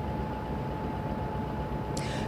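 Outdoor street ambience: a steady rumble and hiss of traffic, with a thin steady tone that cuts off just before the end.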